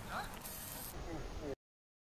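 Faint, distant voices of players on an outdoor pitch over steady background noise, cutting off abruptly to dead silence about one and a half seconds in.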